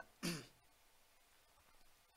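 A man clears his throat with a single short cough.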